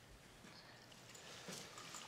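Near silence: quiet room tone with a few faint soft knocks in the second half, most likely footsteps on the kitchen floor.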